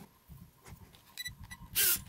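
The JJRC H36 drone's remote-control transmitter giving two short, high electronic beeps, as a toy transmitter does when it is switched on. A short, loud hiss follows near the end.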